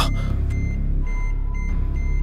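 Low, steady rumbling drone with faint high beeping tones pulsing on and off several times a second, and a further held tone joining about halfway: tense film underscore.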